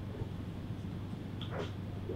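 Quiet room tone in a lecture room with a steady low hum, and one faint short high-pitched sound about one and a half seconds in.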